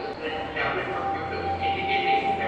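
Indistinct speech in a reverberant room, with a steady electrical hum and a thin steady tone underneath; the low hum grows louder about half a second in.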